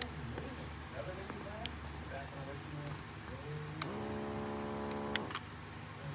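A digital upper-arm blood pressure monitor gives a single high beep, about a second long, as its button is pressed. A steady low hum follows about four seconds in and lasts a second and a half.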